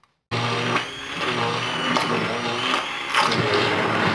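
Hand-held immersion blender switching on abruptly just after the start and running steadily, its motor whirring as the blade purees soft cooked vegetables and chicken in a small metal saucepan.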